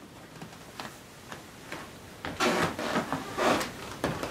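Movement and handling noise: a few faint ticks, then soft rustling and shuffling for about a second and a half from just past halfway.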